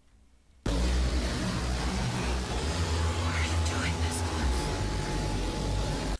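Opening of a witch house rap track: after a brief near-silence, a dense, distorted, noise-heavy beat with deep bass starts abruptly about half a second in, and a thin steady high tone joins it a couple of seconds later.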